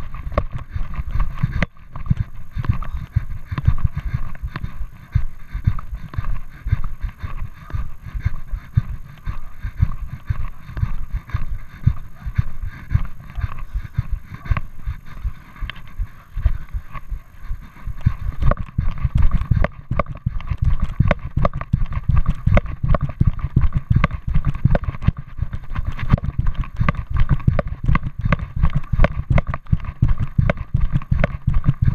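Footsteps of a person walking on a path while carrying the camera, with knocks and rubbing from the camera being jostled, in a steady, continuous rhythm.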